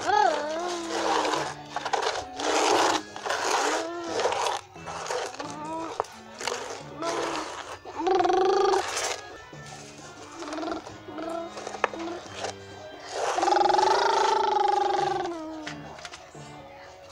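Background music with a low bass line stepping between held notes, under a child's voice making short, rough growling bursts and two longer drawn-out cries.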